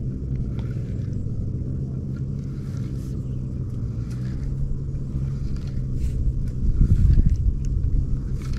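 Steady low rumble that swells near the end, with faint scattered ticks from a spinning reel being handled.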